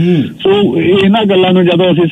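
A man speaking Punjabi, as broadcast over the radio.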